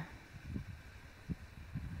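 A faint, uneven low rumble on the microphone, with soft bumps about half a second and a second and a quarter in, in a pause between words.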